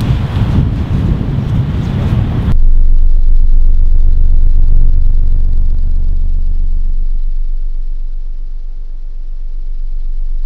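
Wind buffeting an outdoor microphone, then an abrupt cut about two and a half seconds in to a loud, steady, very deep rumble that slowly fades.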